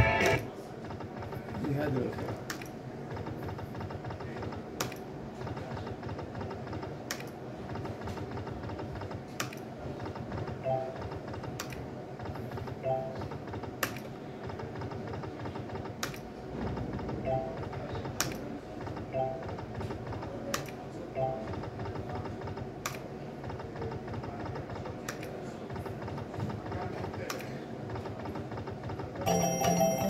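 Online slot machine game running spin after spin: steady game music with a sharp click about every two seconds as each spin is started or its reels stop, and a few short chimes in the middle stretch.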